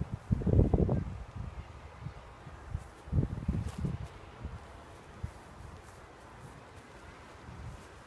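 Wind buffeting the microphone outdoors: two low rumbling gusts, one within the first second and another about three seconds in, then a faint steady outdoor hiss.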